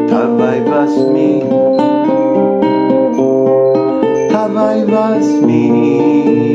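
A man singing a slow devotional song to his own acoustic guitar accompaniment, holding long notes that step from pitch to pitch.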